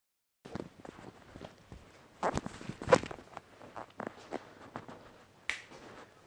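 A scattering of light, irregular clicks and knocks, the loudest about three seconds in, with one sharp click near the end.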